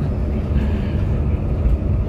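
Steady low rumble of a sleeper bus cruising at a constant speed, its engine and road noise heard from inside the passenger cabin.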